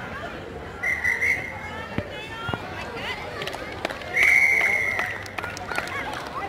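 Referee's whistle blown twice, a short blast about a second in and a longer, louder blast about four seconds in, restarting play after a stoppage for an injury. Spectators' and children's voices carry on underneath.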